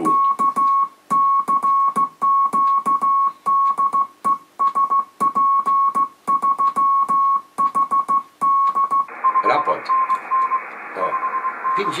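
Morse code sent by hand on an amateur radio key, calling CQ: a steady tone of about 1 kHz keyed on and off in rapid dots and dashes, with sharp clicks. About nine seconds in, the tone gives way to shortwave receiver hiss, with a fainter Morse signal at the same pitch coming through the noise.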